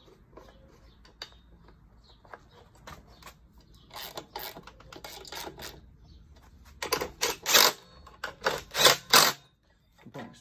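Hand socket ratchet clicking in a series of short strokes as nuts and a bolt are tightened on a two-stroke mower's flywheel cover. The strokes are quieter around four seconds in and loudest from about seven to nine seconds.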